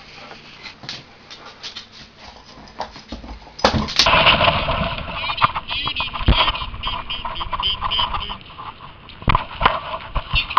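A dog playing with its toys: scattered light clicks, then a sharp knock about four seconds in, followed by louder, close rubbing and mouthing noise from a camera worn by the dog.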